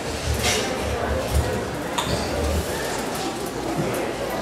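Handheld microphone handling noise: a run of low bumps and thuds as the mic is moved about, with one sharp click about two seconds in.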